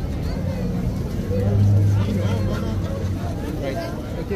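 Indistinct chatter of bystanders' voices, with a low steady engine hum that swells about a second and a half in and fades out by about three seconds.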